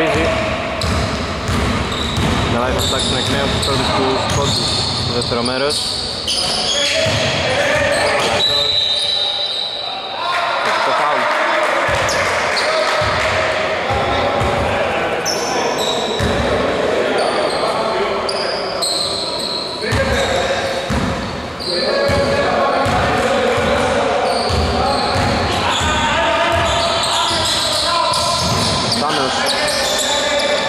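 Basketball game sounds in a large gym hall: the ball bouncing on the wooden court amid short knocks and players' voices calling out.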